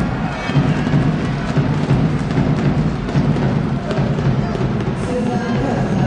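Basketball arena din: a steady mix of crowd noise with drumming and music playing in the hall.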